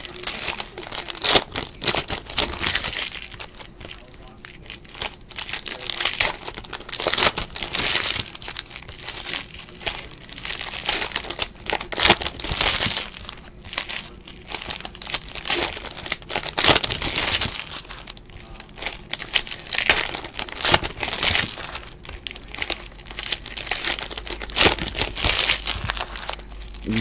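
Foil trading-card pack wrappers being torn open and crinkled by hand, an irregular run of crackling rustles.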